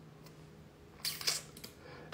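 Quiet room with a few short, soft clicks from a computer mouse and keyboard a little after a second in.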